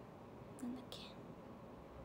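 A woman's brief soft whisper a little over half a second in, over quiet room tone.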